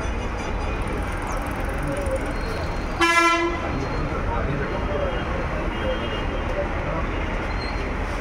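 A vehicle horn toots once, briefly, about three seconds in, over a steady background of crowd chatter and street noise.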